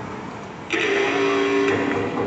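Low hall background noise, then about two-thirds of a second in a song's instrumental backing track starts suddenly with held notes, played over the loudspeakers for a solo singer.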